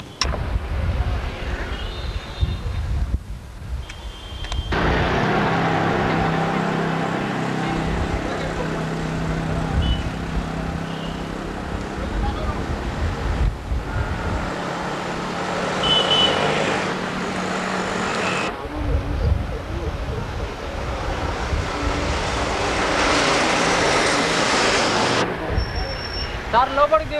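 Outdoor road traffic: vehicle engines running and passing, with indistinct voices mixed in. The sound changes abruptly several times.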